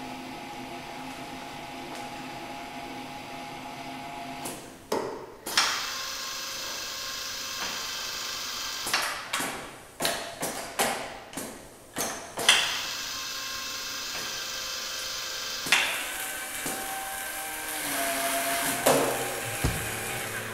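Automated bottle-filling machine running, a steady mechanical hum at first. From about four seconds in comes a run of sharp clacks, each followed by a hiss of air, from its pneumatic actuators working the cap-placing arm and stoppers. A few more clacks and a changing motor whine come near the end as the cap-tightening station works.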